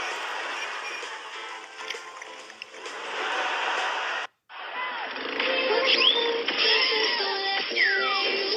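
Rushing whitewater of river rapids with faint music under it. After a brief cutout about four seconds in, a music track with held and sliding tones.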